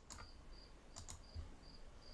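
Faint, short high-pitched chirps repeating evenly about three times a second, with a few soft clicks between them.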